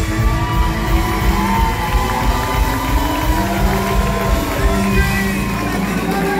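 Live country band playing, with drums, bass, electric guitars and fiddle, heard from within the crowd in a large hall. Some crowd cheering rises over the music.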